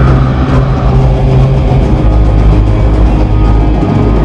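Epic metal band playing live: distorted electric guitars and drums, loud and continuous.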